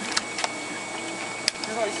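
Three light clicks from a .22 rifle being handled, over a steady hiss, with faint voices near the end.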